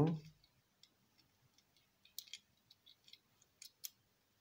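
Scattered faint clicks and light taps of a small diecast model pickup truck being turned over in the fingers, with a few sharper clicks a little after two seconds in and near the end.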